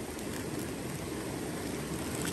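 Steady rushing background noise with a few faint handling sounds.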